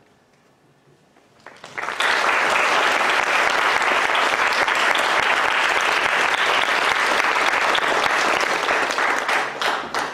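Audience and panel applause. It begins about two seconds in after a brief hush, holds steady, and thins to a few last claps near the end.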